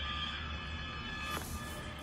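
A held electronic chord playing from a phone's small speaker, cutting off with a click about a second and a half in.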